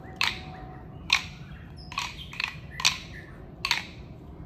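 Hula sticks struck together by dancers: sharp, dry clacks roughly once a second, a few coming in quicker pairs.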